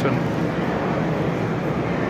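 Steady background noise with a low hum and no distinct events.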